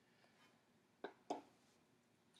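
Near silence: room tone, broken about a second in by two short clicks a quarter-second apart.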